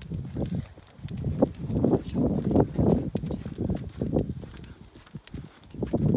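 Footsteps of a person walking on a packed-snow road, in a steady walking rhythm.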